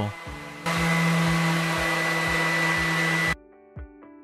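Random orbital sander running on an epoxy-resin and wood tabletop: a steady whir with a high whine that starts under a second in and cuts off suddenly near the end. Background music with a steady beat runs under it and goes on alone once the sander stops.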